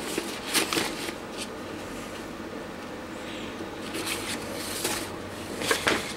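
Printed paper sheets rustling as they are handled and leafed through, in a few short bursts.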